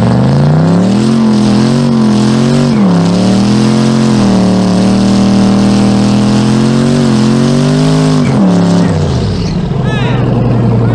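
Turbocharged Chevrolet Silverado's engine revved up and held at high rpm through a burnout, its pitch wavering up and down, then dropping off sharply near the end.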